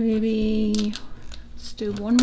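A woman's voice holding a steady, wordless "hmm" for about a second, then a quiet moment of paper sticker sheets being handled, with her voice starting again near the end.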